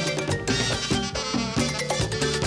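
Live merengue band playing at a fast beat, driven by congas and a tambora drum, with sustained instrument lines over the drums.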